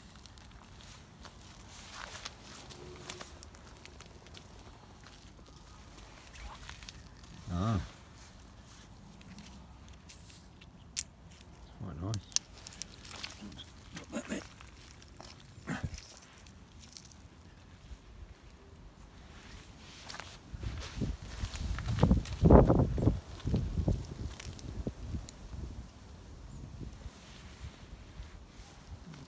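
Footsteps and rustling in dry leaf litter with a few sharp clicks of handling, and a louder burst of low rumbling noise about twenty seconds in that lasts a few seconds.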